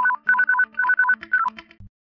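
Short electronic jingle of quick beeps alternating between two pitches, like a ringtone, over a low steady tone, ending abruptly near the end.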